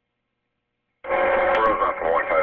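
After a second of dead silence, a voice over a narrow, radio-like channel cuts in abruptly and loud, garbled, with no words made out.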